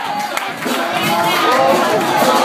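Church congregation calling out and cheering in response to the preacher, many voices overlapping.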